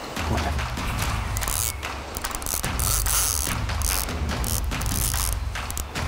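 Fixed-spool fishing reel ratcheting with rapid clicks while a hooked carp is being played on a bent rod.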